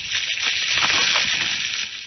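Radio-drama sound effect: a rushing hiss that swells up and dies away, with no pitched engine or music tones in it.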